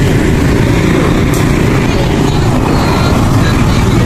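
Loud, steady low rumble of outdoor background noise with no clear rise or fall.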